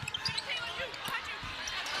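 A basketball dribbled on the hardwood court, several bounces at uneven spacing, over the steady noise of the arena crowd.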